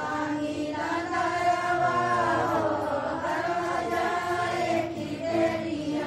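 Group of women singing a Bhojpuri devotional bhajan to Shiva together, in a chant-like melody with long held notes.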